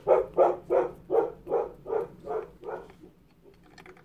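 A pet dog barking in the background, a rapid run of about eight barks that fades and stops about three seconds in. The dog is going off at someone arriving, which the owner takes for the postman.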